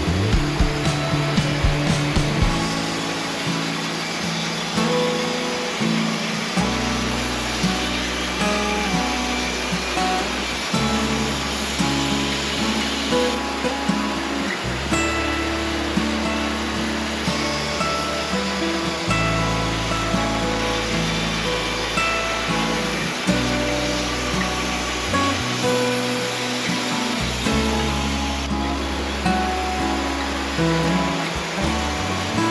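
Background music with a steady beat and bass notes that change every few seconds.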